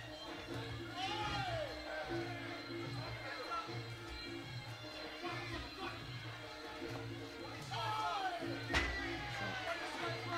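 Muay Thai fight music (sarama) with a steady drum beat and a wavering wind-instrument melody, with voices shouting over it. A single sharp hit stands out near the end.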